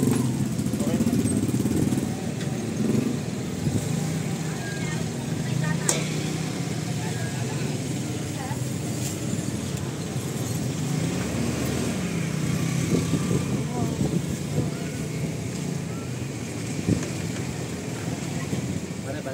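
Small motorcycle engines idling steadily, with people talking indistinctly around them.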